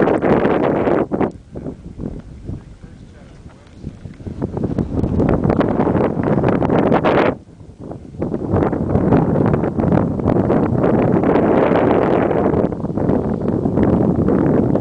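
Wind buffeting a handheld camera's microphone in gusts. It eases for a few seconds, cuts out briefly about halfway, then blows strong and steady.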